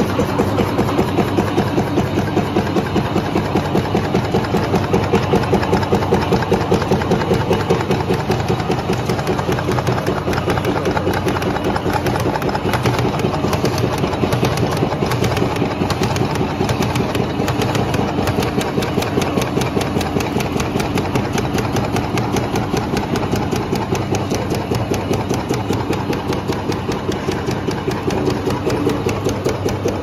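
Flat-bed die-cutting machine with a punching unit running, its die press stamping in a fast, even beat of several strokes a second as the label web feeds through.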